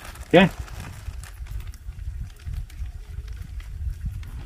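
Uneven low rumble of wind buffeting the microphone, with a short spoken "e aí" just after the start and a few faint clicks.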